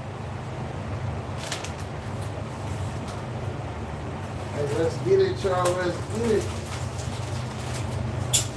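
Steady low hum, with a few short cooing calls about five to six seconds in.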